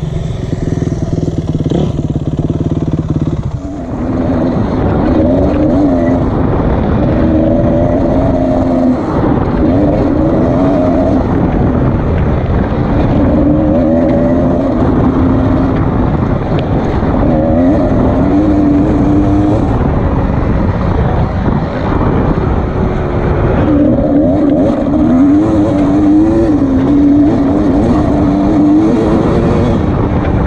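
Dirt bike engine under way on a dirt trail, its revs rising and falling again and again as the rider rides through the gears, over steady wind rush. A steadier low rumble fills the first four seconds or so, before a cut.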